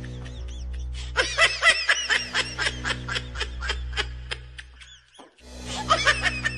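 Music with a steady low drone, overlaid by a quick run of high-pitched giggling, about four or five laughs a second. It cuts out briefly just after five seconds in, then resumes.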